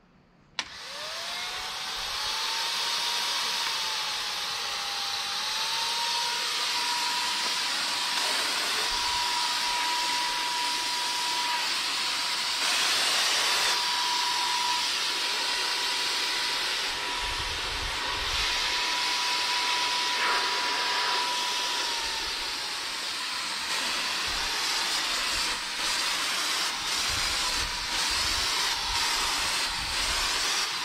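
Wagner Flexio electric HVLP paint sprayer's turbine starting about half a second in, its whine climbing in pitch and settling into a steady high hum over a loud rush of air as paint is sprayed. Later on the pitch drops slightly, and the sound breaks briefly a few times near the end.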